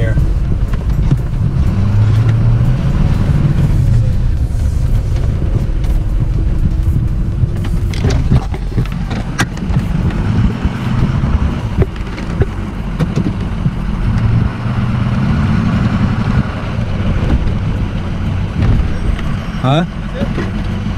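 Inside the cab of a Ford pickup truck driving slowly: a steady low engine and road drone that rises and falls gently with speed, with a few sharp clicks about halfway through.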